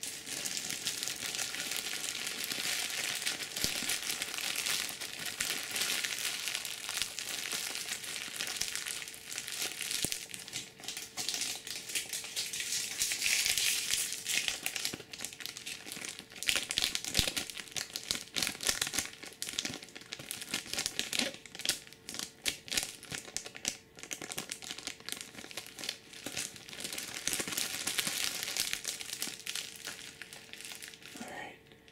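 Clear plastic bag and opened Magic booster-pack wrappers crumpled and crinkled in the hands, a continuous irregular crackle full of sharp little snaps.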